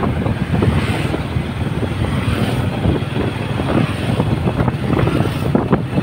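Vehicle engine running steadily as it travels along a road, with wind buffeting the microphone.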